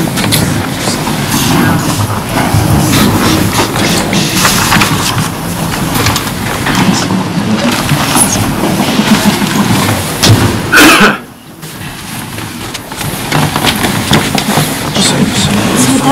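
Crowd murmur: many overlapping conversations in a full meeting room, with scattered small knocks and rustles. About eleven seconds in there is one brief sharp sound, then a short lull before the chatter picks up again.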